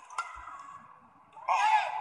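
A single sharp racket strike on a badminton shuttlecock just after the start. About a second and a half in comes a loud exclaimed "Oh" from the commentator.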